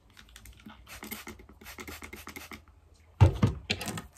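Damp cloth rubbed and pressed through hair, a run of short scratchy rustles, then two loud bumps a little after three seconds in.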